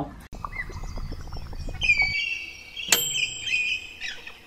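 Birds chirping and twittering in high, wavering calls, with a run of faint light clicks before them and a sharp click about three seconds in.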